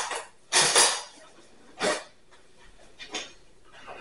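Metal cutlery clattering as a spoon is fetched: a rattling burst about half a second in, then two brief clinks.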